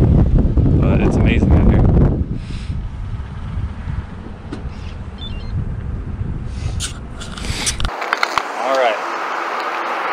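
Wind buffeting an action-camera microphone: a loud low rumble for the first two seconds, then a weaker steady rumble. It cuts off abruptly near the end, where a brief voice is heard.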